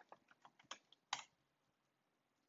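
Faint typing on a computer keyboard: a few quick keystrokes, the loudest just over a second in.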